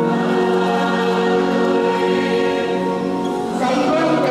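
Choir singing a slow sacred hymn in long held notes in a large church, moving to a new phrase near the end.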